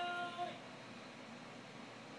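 Baby's electronic musical activity table sounding a held note that cuts off about half a second in, followed by faint room noise.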